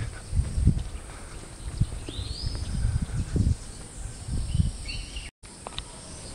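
Outdoor garden ambience: a few short, high bird calls, one a rising whistle about two seconds in, over irregular low thumps and rustle from a handheld camera being walked along. The sound cuts out for an instant near the end.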